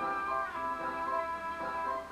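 Hupfeld Phonoliszt-Violina playing: real violins sounded by its rotating horsehair bow ring, giving held, sustained violin notes.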